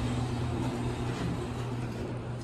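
Steady low hum with an even hiss inside a hydraulic elevator car stopped with its doors open, slowly getting quieter as the car is left.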